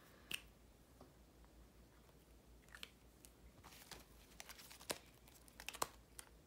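Faint handling sounds of a cash-envelope binder: scattered clicks and crinkling rustles as it is opened and its clear plastic pouches are flipped.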